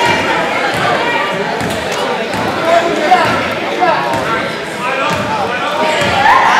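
A basketball dribbled on a hardwood gym floor, with a few sharp bounces standing out about halfway through, over the indistinct chatter of spectators and players echoing in the gym.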